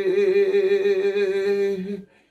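A man's voice holding one long sung note with a slight waver, part of a chanted prayer. It stops abruptly at the end.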